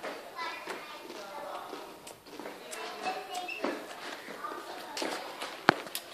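Faint background chatter of people, including children, with one sharp click near the end.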